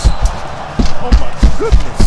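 A run of low thumps, about three a second, with brief fragments of voice over them.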